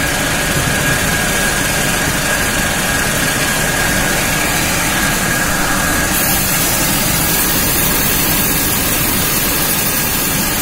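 Fortified rice production-line machinery running with a loud, steady mechanical noise. A thin steady whine drops out about six seconds in.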